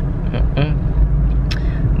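Steady low rumble of a car's engine and road noise heard from inside the cabin while driving. A brief murmur of a voice comes under a second in, and a single click about one and a half seconds in.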